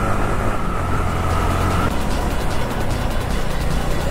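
Yamaha motorcycle engine running with wind rush while riding, the engine note changing about two seconds in as the bike slows into a bend. Music plays along with it.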